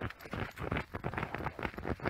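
Siberian husky digging with its front paws in snow and the frozen grass and dirt beneath, a quick run of scraping strokes, about six a second.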